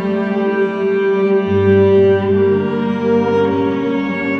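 Cello playing a slow, sad melody in long bowed notes, with lower bowed parts sustained beneath; a deep bass note comes in about a second and a half in.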